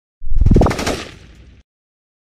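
Logo-intro sound effect: a sudden heavy hit with a rising sweep in pitch, fading over about a second and then cut off abruptly.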